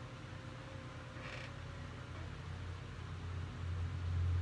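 Low steady room hum that swells near the end, with one brief soft swish about a second in as a makeup brush sweeps blush across the cheek.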